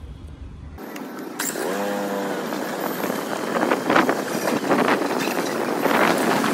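Outdoor street noise that grows louder through the second half, with a few sharp clicks and a short drawn-out voice call about two seconds in.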